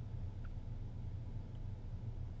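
Quiet room tone: a steady low hum with faint hiss and no distinct sound event.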